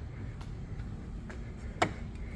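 Low background noise with faint handling sounds and one sharp click near the end.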